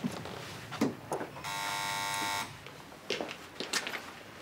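An electric doorbell buzzer sounds once, a steady harsh buzz lasting about a second, about halfway through.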